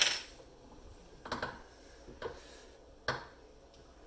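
Metal clinks and knocks from a steel rawhide lace cutter and Allen wrench being handled and set down on a wooden workbench. A sharp clink with a short ring comes at the very start, then three softer knocks about a second apart.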